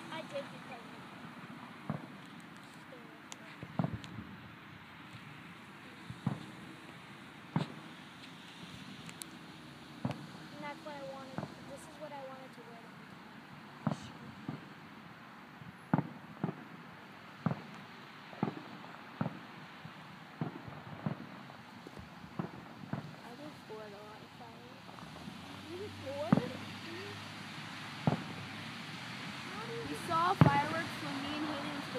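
Fireworks and firecrackers going off around the neighbourhood: sharp bangs and pops at irregular intervals, one every second or two, some much louder and nearer than others.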